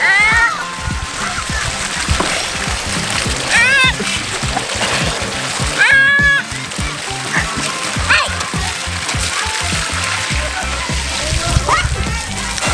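Ground fountain jets spraying and splashing on wet pavement, with a toddler's high-pitched squeals about four times, over background music with a steady beat.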